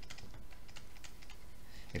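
A run of light clicks and taps from a stylus on a tablet as words are handwritten.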